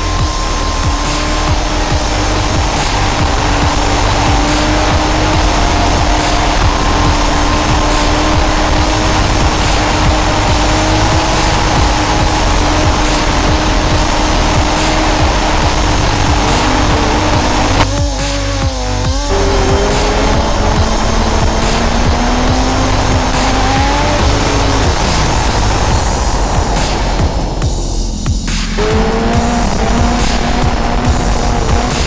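Honda sportbike engine pulling at highway speed under heavy wind rush, its note holding steady for long stretches, climbing after the middle and dropping near the end, with music playing underneath.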